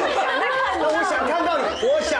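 Only speech: a lively spoken exchange of voices.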